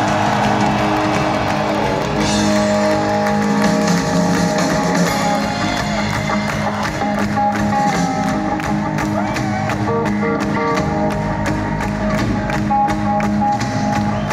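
Live rock band playing: sustained electric guitar and bass notes ring out, and a steady cymbal tick comes in about halfway through.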